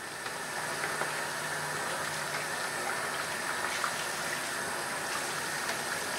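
Hot water running steadily from a bathroom tap onto a shaving brush in the sink, rinsing the lather out of it.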